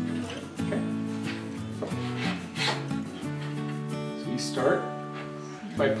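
A coping saw rasping slowly through a thin wooden shim in a few uneven back-and-forth strokes, over steady background music.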